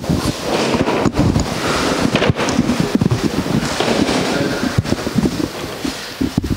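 Shuffling, irregular knocks and chair noise as a roomful of people sit down on chairs.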